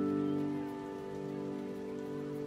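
Slow, soft piano music: a held chord slowly dying away, with no new note struck.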